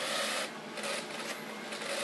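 Toy power drill running in short bursts, a rasping whir, the longest in the first half second and shorter ones after.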